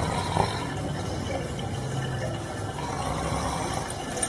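Steady background noise with a low rumble, and a brief knock about half a second in.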